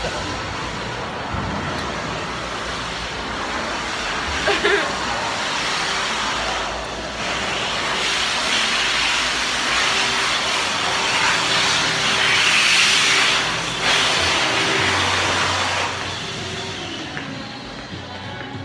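Electric hand dryer blowing with a steady rushing hiss and a faint steady motor tone. It builds up about six seconds in and stops about sixteen seconds in.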